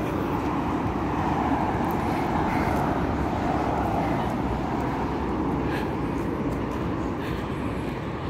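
Street traffic: a steady road noise of passing cars, swelling over the first few seconds and easing off toward the end.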